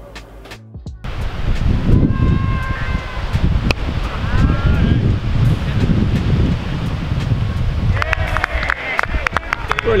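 Wind buffeting an outdoor camera microphone, a loud, rumbling noise that starts about a second in. Distant shouts from cricket players come in near the end.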